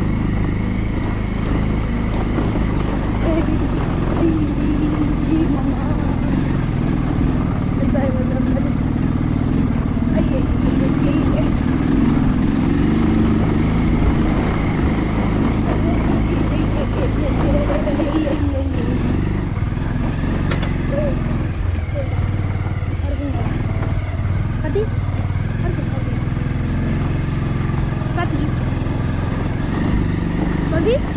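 Motorcycle engine running steadily while the bike rides over a rough stony dirt track.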